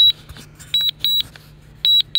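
DJI Mavic Mini remote controller beeping: short high beeps in pairs, about one pair a second. This is the controller's warning tone while the drone is on automatic return-to-home after losing its signal.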